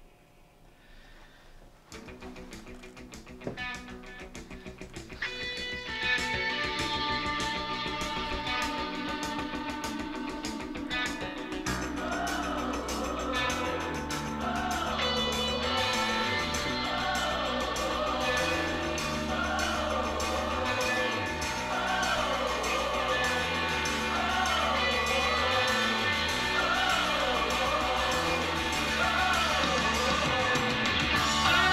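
Guitar music from a vinyl record played through a pair of 1976 KEF Corelli speakers, still on their original, un-recapped crossovers, picked up by a camera microphone in the room. It is nearly quiet for the first two seconds, the music comes in about two seconds in, grows louder around six seconds, and a steady bass line joins about twelve seconds in.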